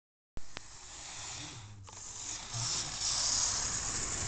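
Model train running on its track: a steady high hissing whir of the motor and wheels that grows louder from about two and a half seconds in, with a single click just after it begins.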